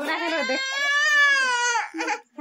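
Baby crying: one long wail that rises slightly in pitch and falls away near the end.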